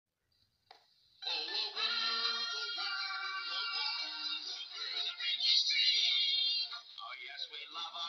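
Sung cereal-commercial jingle with music, starting suddenly about a second in after silence, with long held notes at first and quicker sung phrases near the end. It sounds thin, played back through a screen's speaker.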